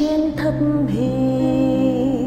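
A woman singing a slow Vietnamese hymn over a steady instrumental accompaniment, ending on a long held note.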